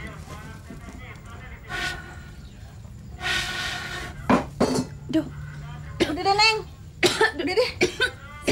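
A woman blowing hard through a bamboo blow pipe to fan a wood fire, then coughing in short bursts, several times over.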